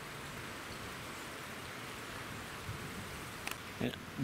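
Big River in flood rushing past a bridge and a half-submerged tree: a steady, even hiss of fast-moving water.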